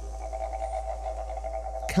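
Background music score: a sustained low drone with a few steady held tones above it.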